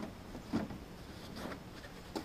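A few light clicks and knocks as the plastic blade-wheel cover of a Norwood LumberMate LM29 band sawmill is unclipped and lifted off, the loudest about half a second in.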